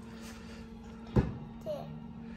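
A single sharp knock about a second in, a spatula striking the enamel pot as butter and brown sugar are stirred, over a steady low hum.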